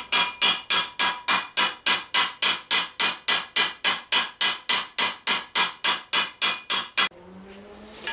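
Planishing hammer striking a sheet-metal armour vambrace held over a flat stake: a steady run of light blows, about four a second, each with a short metallic ring. It is planishing from the outside, gently riding out a bulge in the curve to smooth the surface. The hammering stops about seven seconds in.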